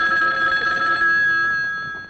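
Telephone bell ringing: one long ring that fades away near the end.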